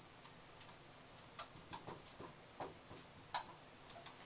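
Dry-erase marker writing on a whiteboard: faint, irregular taps and short scratchy strokes as the letters are drawn.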